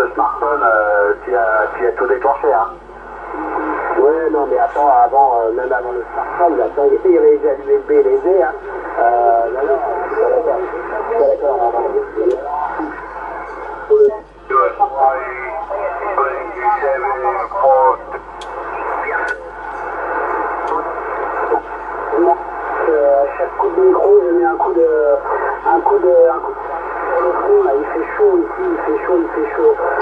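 Voices of distant stations coming in over a Yaesu FT-450 HF transceiver's speaker on the 27 MHz CB band, thin and narrow-band as received radio speech. The talk is almost continuous, with a short break at about 14 seconds, while the set is tuned down the band.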